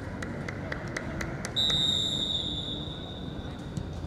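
Referee's whistle blown in one long steady high blast that starts about a second and a half in and fades over about two seconds. A few sharp taps come before it.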